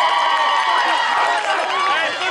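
Crowd in the stands of a football game cheering and shouting, many voices overlapping. The sustained cheering dies down about one and a half seconds in, leaving scattered individual shouts.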